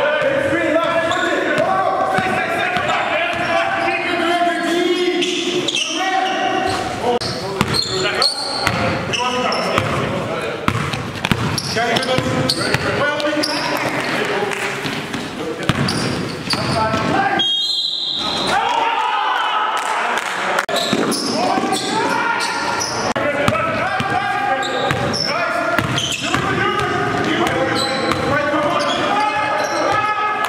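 Basketball dribbling on a gym floor, with voices echoing through the large hall.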